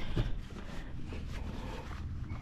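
Faint rustling and a few soft knocks as a leather work boot is pulled onto a foot, over a low steady rumble.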